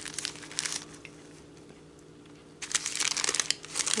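Clear plastic bag crinkling as it is handled and opened. A few light crackles come in the first second, then dense crinkling starts about two-thirds of the way in and carries on.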